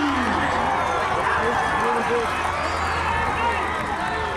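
Crowd of spectators at a football game talking all at once, many voices overlapping into a steady chatter with no single voice standing out.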